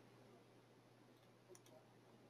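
Near silence, with two faint computer mouse clicks about one and a half seconds in.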